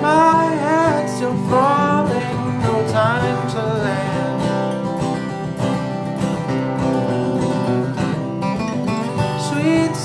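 Acoustic folk band playing live: acoustic guitars strumming with a mandolin, and a male voice singing over the first few seconds. A short instrumental stretch follows, and the singing comes back near the end.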